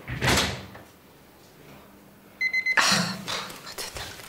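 A short run of rapid, high electronic beeps about two and a half seconds in, from a portable ambulatory blood pressure monitor that beeps at each timed measurement. It is followed by rustling and movement noise, and a brief scuffing noise comes at the very start.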